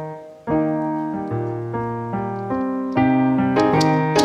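Piano playing an Argentine folk samba: a phrase of held chords over bass notes starts about half a second in, and the notes come quicker and brighter in the second half.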